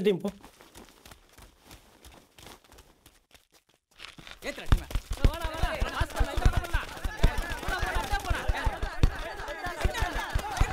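Quiet with faint taps for the first few seconds, then from about four seconds in many football players shouting over one another, with a dense run of thuds from running feet and kicks on the dirt pitch.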